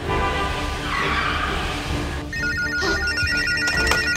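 A telephone ringing with a fast trill that flips between two pitches, starting a little past halfway, over trailer music. For the first two seconds a swelling rushing noise sits in the music.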